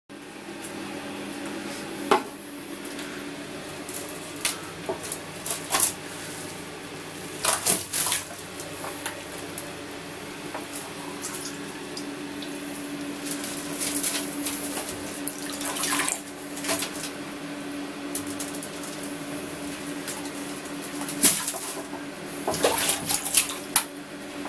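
Water sloshing and splashing in a plastic bucket as a small hand net is swept through it, with a run of short splashes and drips, busiest near the end. A steady low hum runs underneath.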